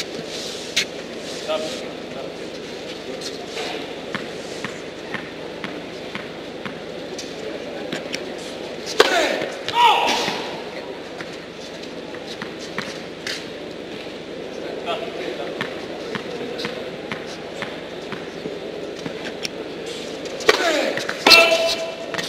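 Indoor tennis hall between points: a steady murmur of room noise with scattered light knocks on the court, a brief voice about nine seconds in, and voices again near the end.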